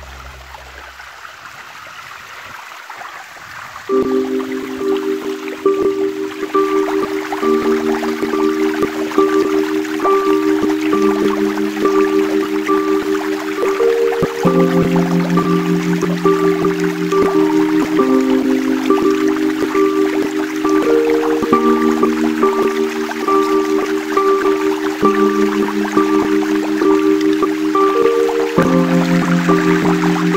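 Running water rushing through a rock channel, joined about four seconds in by background music of slow, held chords with a light regular tick, which then rises above the water.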